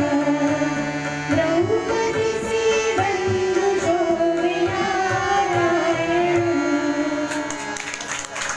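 Indian song performed with a singer carrying a gliding melody over a tabla-style hand drum keeping a steady rhythm.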